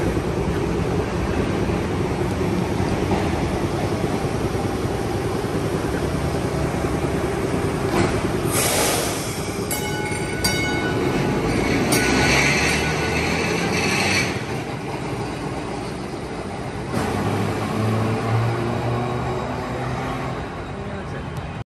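TECO Line electric streetcar, a replica Birney trolley, running past the platform, its wheels and motors rumbling on the rails. There is a sudden burst of noise about eight seconds in, a short ringing tone near ten seconds, and a higher-pitched noise from about twelve to fourteen seconds.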